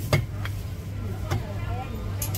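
A cleaver knocking against a whole cooked chicken on a thick wooden chopping block: three light strikes, spread over the couple of seconds, with a steady low hum underneath.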